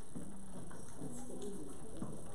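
A low, quiet voice murmuring indistinctly in short phrases that rise and fall in pitch.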